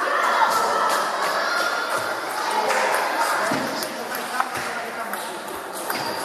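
Table tennis ball struck back and forth in a rally, heard as a series of sharp clicks off the bats and table, over background voices.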